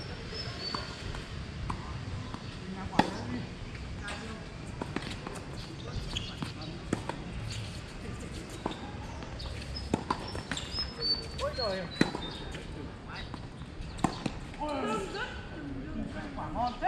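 Tennis balls being struck by rackets and bouncing on a hard court during a doubles rally: a series of sharp pops roughly a second apart, the loudest about three seconds in, with voices in the background near the end.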